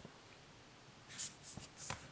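Faint swishes of tarot cards sliding over one another as a card is moved off the top of the pile: three short strokes in the second half.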